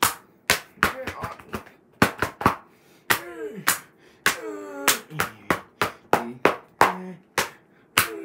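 Sharp slaps and claps in quick, irregular succession, about fifteen in all, mixed with a man's wordless vocal sounds that rise and fall in pitch.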